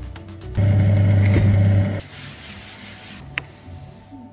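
Power drill boring a hole into plywood with a twist bit, running steadily and loudly for about a second and a half. A single sharp click comes near the end.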